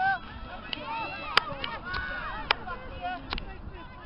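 Distant shouts and calls of footballers across an open pitch, with three sharp knocks spread through.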